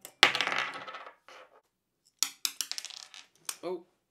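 Small metal parts from a microphone's yoke mount clatter onto a wooden desk. First comes a sharp metallic hit with ringing. About two seconds in, a quick run of small clinks dies away, like a washer bouncing and settling.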